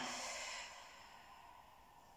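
A person breathing out slowly, the breath noise fading away over about the first second into near silence.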